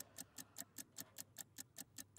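Faint ticking of an on-air countdown clock sound effect: short, even ticks, about five a second.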